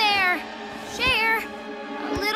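Two short, high wordless cries, each falling in pitch, one at the start and one about a second in, over soft background music.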